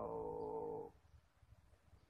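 A man's voice holding a steady hesitation sound, a drawn-out "ehh", for about a second.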